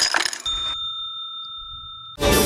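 Intro sound effects: a short burst of glitchy clicks and noise, then a bell-like ding that rings on for about a second and a half, fading slowly.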